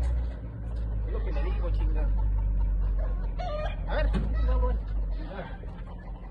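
A rooster crowing and clucking over a steady low rumble that fades out near the end.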